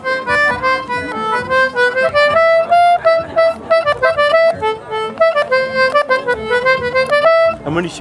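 Two-row Anglo concertina played as a quick melody of reedy notes, a few sounded together, stopping just before the end. The bellows push and pull in turn, and each button sounds one note going in and another going out.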